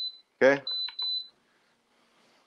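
Three short, high, steady electronic beeps: one at the start, then two more in quick succession.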